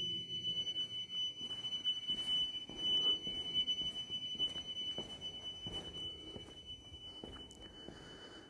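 Building fire alarm sounder giving one continuous high-pitched tone, steady and unbroken. It is going flat out.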